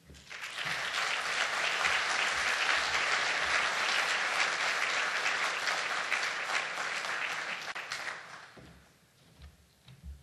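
Audience applauding. It swells up quickly at the start, holds steady, and fades out about eight seconds in.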